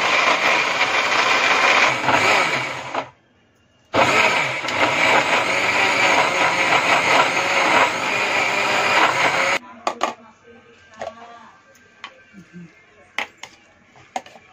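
Electric mixer grinder with a stainless steel jar grinding coconut chutney: it runs for about three seconds, stops for about a second, runs again for about five and a half seconds, then cuts off suddenly. Scattered clicks and scraping of a steel spoon in the jar follow, as the coarse paste is stirred; it is still too thick to grind fine and needs more water.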